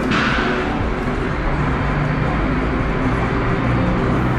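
Casino-floor ambience: a steady, dense wash of noise with a low hum and indistinct voices, starting suddenly.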